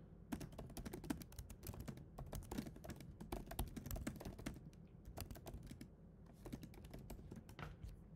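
Typing on a computer keyboard: a quick, irregular run of soft key clicks as a sentence is entered, with a short lull a little past the middle.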